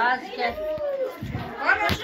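Children's voices chattering and calling out, with a single short sharp knock near the end.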